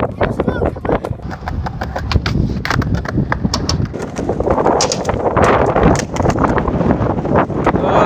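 Skateboard wheels rolling over concrete paving slabs, clacking over the joints in a fast, uneven run of knocks, over a low rumble of wind on the microphone.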